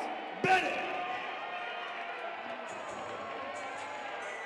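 A sharp thump about half a second in, then the murmur of many overlapping voices from an arena crowd.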